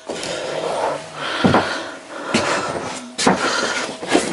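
Handling noise in a small room: a steady rustling, broken by three sharp knocks and clicks as tools and materials are picked up and set down.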